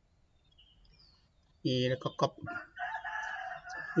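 A long, steady bird call, held for about a second in the background under a man's speech, after a quiet first second and a half with a few faint high chirps.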